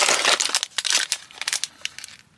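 Sealed plastic parts bags of building bricks crinkling as they are picked up and handled. The crackle is dense at first and thins out toward the end.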